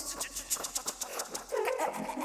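Experimental vocal improvisation in a woman's voice: a fast run of short breathy clicks, about eight a second, giving way near the end to brief pitched vocal squeaks.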